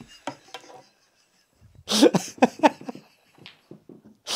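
A man laughing helplessly: a few faint breaths, then about two seconds in a quick run of breathy "ha" bursts, about five a second.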